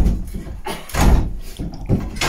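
A wooden door being forced at its latch from the inside: three heavy knocks and rattles, about a second apart, as the locked door is worked loose.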